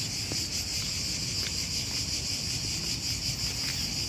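A steady, high-pitched chorus of insects: a continuous shrill drone with a slight flutter, unbroken throughout.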